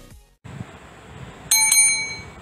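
Electronic intro music fading out, then after a short gap a bright bell ding struck twice in quick succession, ringing on: a notification-bell sound effect for a subscribe animation.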